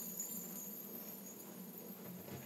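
Faint steady whir of a spinning fidget spinner held between fingers, easing off slightly.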